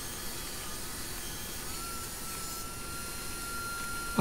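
Jobsite table saw running while ripping a board: a steady rushing noise, with a faint thin whine that comes in about halfway through and holds.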